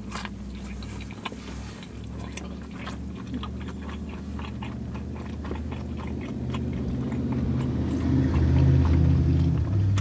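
Close-up chewing of a mouthful of deep-dish pizza, with many small wet clicks and crunches. A low hum runs underneath and grows louder over the last few seconds.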